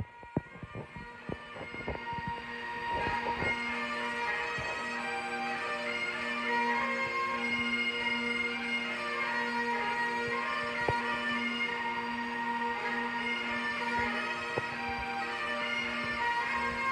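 Bagpipes playing a tune over a steady drone, growing louder over the first three seconds, with a few clicks of handling near the start.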